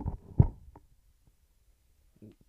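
A single dull thump about half a second in, followed by a couple of faint ticks and then near silence.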